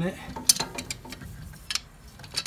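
A few sharp clicks of large metal pliers being fitted and squeezed around a plastic transmission cap, the strongest about half a second in and another near the end.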